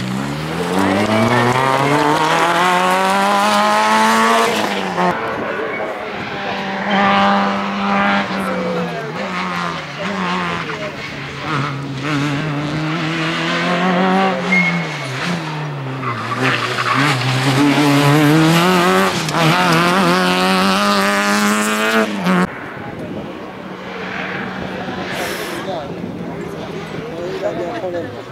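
Small rally car engines revving hard through the gears, the pitch climbing and dropping at each gear change, again and again. About 22 seconds in the sound changes suddenly and settles into a quieter, steady engine note. The first climb is the Peugeot 106 accelerating away under full throttle.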